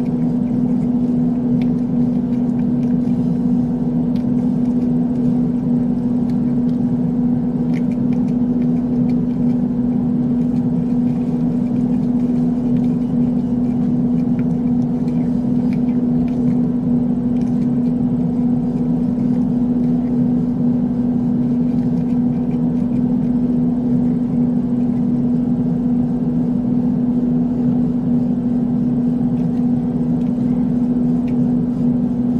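Steady, unchanging hum with a single low tone, with a few faint clicks over it.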